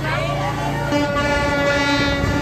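A horn sounding one long, steady blast that starts about a second in, over a steady low drone that stops at the same moment.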